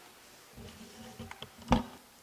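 Quiet room tone with a faint low buzz and a few small clicks, broken by a single sharp knock a little before the end.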